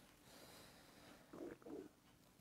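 Near silence: room tone, with two very faint, brief soft sounds about a second and a half in.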